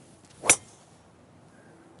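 A golf driver striking a teed ball: one sharp, loud crack about half a second in, from a solidly hit drive.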